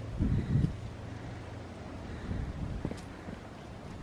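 Wind buffeting the camera's microphone in a low rumble, with stronger gusts in the first second, then steadier.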